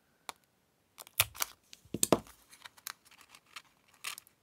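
A 1.5-inch EK circle paper punch squeezed shut on a sheet of card, giving a few sharp plastic clicks and snaps, the loudest about a second in and again about two seconds in, with light paper handling between.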